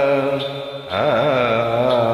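Carnatic vocal in raga Kalyani over a steady drone: the voice holds a note, fades briefly about half a second in, then comes back near one second with an oscillating, ornamented note (gamaka) and settles into a sustained tone.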